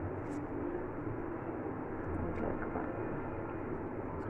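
Steady low background hum, with a few faint soft ticks.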